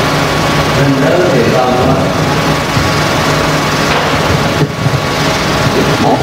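A steady mechanical drone with a low hum, like a small engine running, and a faint voice about a second in.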